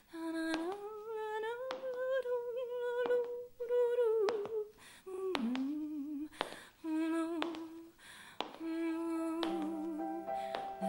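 A woman humming a slow, wordless melody with vibrato, unaccompanied, in phrases of one to three seconds. A piano chord comes in under the voice near the end.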